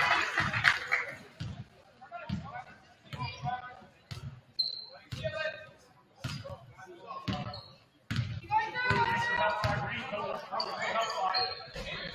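A basketball being dribbled on a hardwood gym floor, bouncing roughly every two-thirds of a second, in a large echoing gym.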